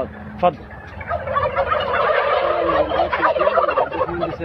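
A flock of white domestic turkey toms gobbling together, a loud, dense chorus of overlapping gobbles that breaks out about a second in and keeps going.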